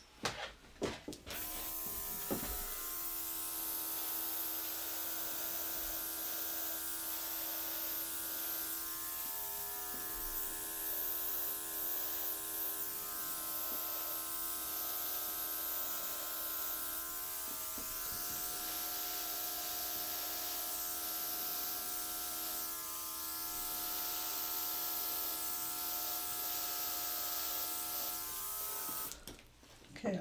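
Small motor of a cordless airbrush running steadily with a hiss of air, blowing puddles of acrylic paint outward into flower shapes. It starts about a second in, after a few light knocks, and cuts off just before the end.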